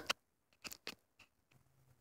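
A few faint, scattered clicks and taps of plastic model horses being handled on a tabletop.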